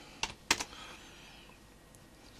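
Computer keyboard: two sharp key clicks in the first half second as the last of a typed line is entered.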